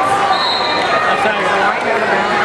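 Crowd of spectators in an arena talking and calling out all at once, a dense, steady wash of voices. A short, steady high tone sounds about half a second in.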